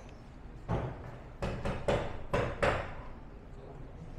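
Five sharp knocks in quick succession, a hard object struck against a hard surface, the last four coming closer together.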